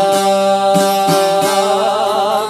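Albanian folk song: a voice holds one long note that starts to waver in a vibrato about one and a half seconds in, over steady plucked strokes of a çifteli.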